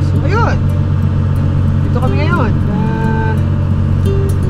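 Boat's engine running steadily, a continuous low drone.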